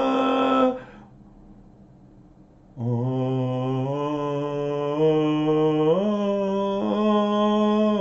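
A man chanting long held, wordless notes. The first note breaks off just under a second in. After a pause of about two seconds a lower note begins and steps up in pitch twice.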